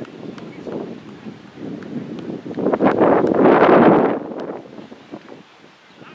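Wind buffeting the microphone outdoors: a gust swells about two and a half seconds in and lasts under two seconds, the loudest sound, over a quieter background of faint wind.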